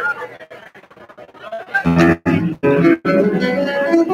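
Amplified acoustic-electric guitar played solo: a couple of seconds of quiet, sparse plucked notes and clicks, then loud strummed chords cut off sharply a few times before the playing settles into a steady run of chords.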